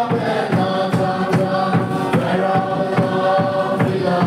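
A large congregation singing a hymn together, many voices holding long drawn-out notes.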